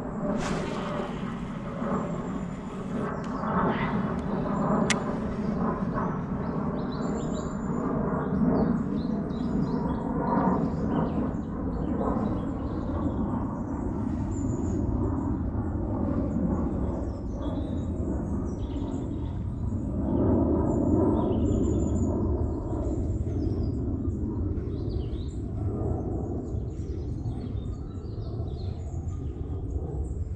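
Outdoor ambience: small birds chirping now and then over a steady low rumble, with a single sharp click about five seconds in.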